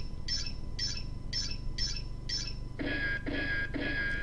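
Electronic beeping sound effect: short high beeps, about two a second. Nearly three seconds in, it changes to three lower, fuller pulses over a steady held tone.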